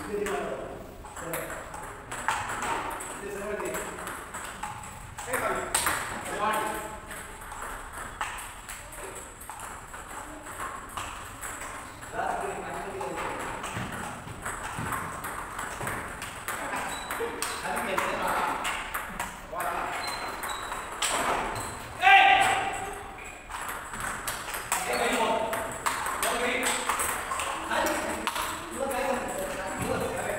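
Table tennis rallies: a celluloid ball clicking on the bats and bouncing on the tables in quick irregular knocks, over and over. People's voices talk and call throughout, loudest about two-thirds of the way through.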